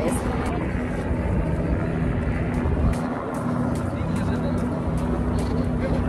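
A steady, low engine drone with wind rumbling on the microphone.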